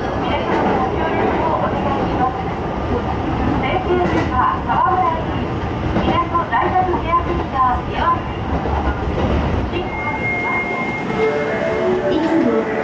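Interior of an Osaka Metro Chuo Line train car while it runs: a steady rumble of motors and wheels on the rails, with people's voices over it.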